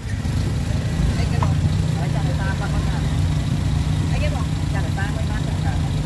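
A vehicle engine idling with a steady low rumble, with faint voices in the background.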